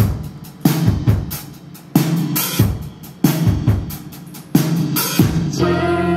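Live band playing the opening of a song, driven by a drum kit: kick drum, snare and cymbal hits. Held notes from the band come in near the end.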